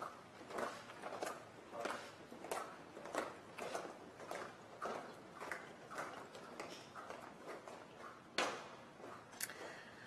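Measured marching footsteps of a military color guard on a hard floor, evenly paced at about a step and a half a second and growing fainter toward the end. One sharper, louder knock a little past eight seconds in.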